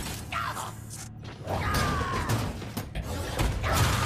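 Cartoon giant-robot sound effects: a run of sharp mechanical clanks and knocks, with a short falling servo whine about halfway through and again near the end.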